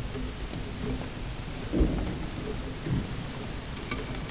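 Low rumbling shuffle of a crowd of students moving through a hall, with two dull thumps, the first about two seconds in and the louder of the two, and a second about a second later.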